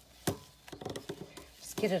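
A sharp knock about a quarter second in, then a quick run of light clicks and taps, before a voice starts speaking near the end.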